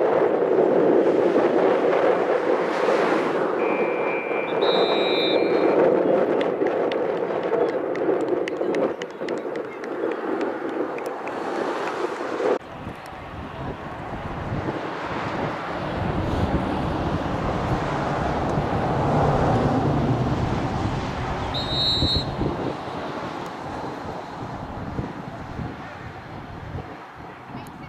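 Outdoor lacrosse field ambience: wind on the microphone and spectators' voices, with a whistle blast about four seconds in and a shorter one near 22 seconds. The background changes abruptly about halfway through, then turns to lower wind rumble.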